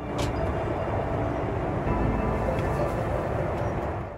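Steady cabin noise of a Boeing 737 MAX 9 airliner in cruise: an even, low rush of airflow and engine noise heard inside the passenger cabin.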